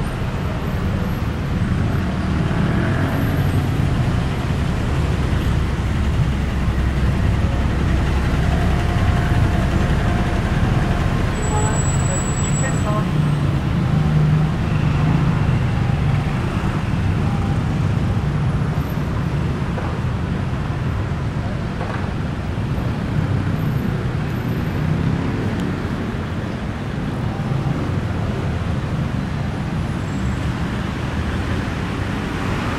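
Steady city road traffic: the continuous low rumble of cars and motorcycles moving slowly along a busy multi-lane road.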